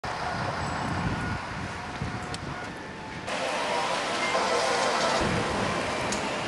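Street traffic noise, with buses and cars on a rain-wet road. The sound turns abruptly to a brighter, steady hiss a little over three seconds in.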